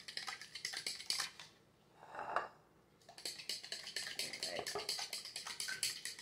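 Eggs being beaten with a fork in a plastic mixing bowl: fast, even clicking of the fork against the bowl, stopping for about a second and a half before picking up again.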